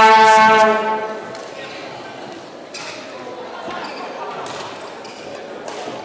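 A loud, steady signal tone at one fixed pitch, fading away about a second in. After it the echoing ambience of a large hall, with a few sharp knocks.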